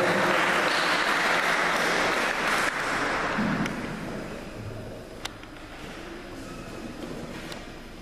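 Crowd applause, loud at first and dying away over about four seconds, leaving low hall noise broken by a single sharp click about five seconds in.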